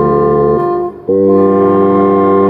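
Galassine bass saxophone with low A playing a hymn over organ accompaniment in long held notes. The chord cuts off about half a second in, there is a half-second break between phrases, and a new sustained chord then enters.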